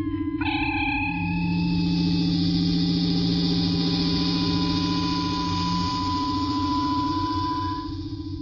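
Star Trek transporter beam sound effect dematerializing a landing party: a sustained, shimmering, pulsing tone with a steady high ring, starting about half a second in and fading out near the end.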